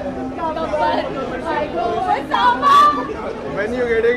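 Two women laughing and chattering close together, with a loud, high-pitched laugh about two and a half seconds in.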